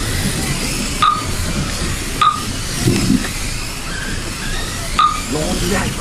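Steady whirring hiss of 1:28-scale Mini-Z electric RC cars racing on a carpet track, with three short high beeps about a second, two seconds and five seconds in, and faint voices underneath.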